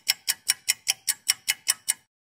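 Ticking sound effect like a clock: even, sharp ticks at about five a second, stopping suddenly at the end.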